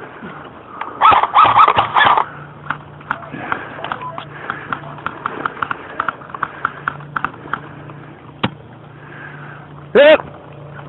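A voice calls out briefly about a second in, followed by a run of irregular sharp clicks and taps for several seconds and one louder crack near the end.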